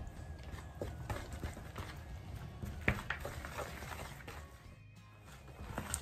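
A wooden spoon stirring thick brownie batter in a mixing bowl: repeated small knocks and scrapes, with one sharper knock about halfway through, over background music.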